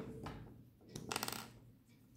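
A brief clinking rattle of small hard objects about a second in, with a fainter click just before it.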